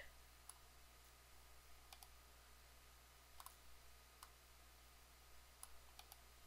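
Faint computer mouse clicks, about five spread over a few seconds, in near silence.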